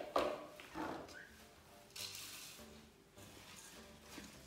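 Seeds poured from a clear beaker into a glass mixing bowl of rolled oats, with a few light knocks of spatula and container against the glass and a pour of about a second in the middle, over faint background music.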